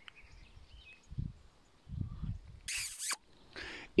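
Quiet outdoor ambience with a couple of low rumbles on the microphone and a short hiss shortly before speech resumes.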